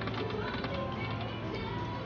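Video slot machine spinning its reels: rapid, even ticking of the reel-spin sound effect over the machine's electronic music.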